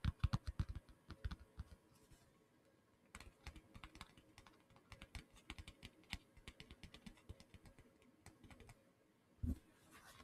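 Fingertip and fingernail tapping on small handheld objects, a stitched wallet and a clear plastic case, close to a microphone. A run of quick, sharp taps is followed by a short pause, then lighter rapid tapping, and a duller, louder thump near the end.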